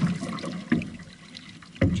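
Water lapping and trickling against the hull of an outrigger canoe held still at the start line with paddles in the water. Two short knocks, the louder one near the end.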